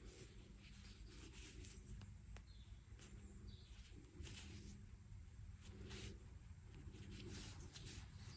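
Very faint rustling and scratching of yarn being drawn through crocheted fabric with a needle, as a doll's leg is sewn on.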